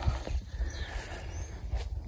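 Footsteps through long grass with handling and wind rumble on a handheld camera's microphone, and a faint bird chirp about a second and a half in.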